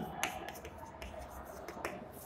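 Chalk writing on a blackboard: a few faint taps and scratches as the chalk strikes and moves across the board, with a sharper tap shortly after the start and another near the end.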